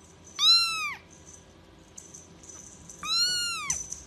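Kitten meowing twice: two high-pitched calls, each rising then falling in pitch, about two and a half seconds apart.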